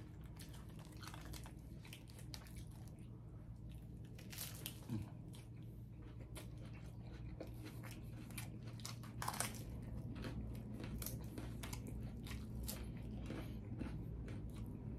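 Chewing a mouthful of smash burger taco, with scattered crisp crunches from the fried tortilla shell.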